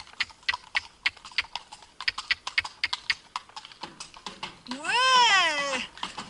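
A horse's hooves clip-clopping on concrete, about four strikes a second. Near the end comes a long, drawn-out rising-and-falling "ouais" from the rider.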